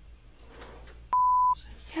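A single short, steady censor bleep about a second in, a pure tone replacing the audio for under half a second, set against faint room tone.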